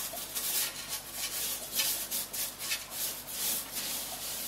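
Aquarium gravel being pushed and spread by hand across the glass bottom of an empty tank: an uneven, gritty scraping and crunching of small stones in quick, irregular strokes.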